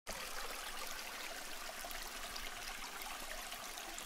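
Steady sound of running, trickling water.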